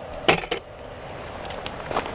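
Movement and handling noise from someone walking with a handheld camera: two short knocks about a third and half a second in, then a low, even rustle with a couple of faint clicks near the end.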